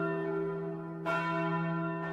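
A low, bell-like tone with many ringing overtones, struck again about a second in and slowly fading: a bell chime in a logo intro sound effect.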